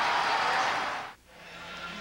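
A TV sports broadcast's transition sting: a noisy whooshing wash that fades out about a second in. It is followed by a brief drop to near silence and a faint hum before the next segment.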